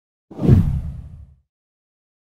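A whoosh sound effect with a heavy low end, starting suddenly a third of a second in and fading away over about a second.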